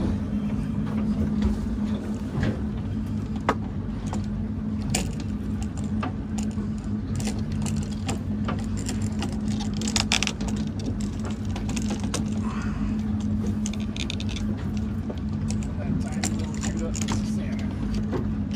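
Boat engine idling with a steady low hum, with scattered sharp clicks and knocks from handling on deck.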